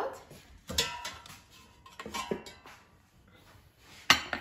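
A metal springform pan knocking and clinking against the air fryer basket as it is lifted out, with a few sharp knocks and brief metallic ringing in the first half.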